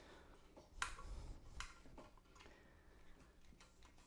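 Faint clicks and ticks of wires being handled in a metal electrical junction box while splices are made, two sharper clicks in the first two seconds, then lighter ticks.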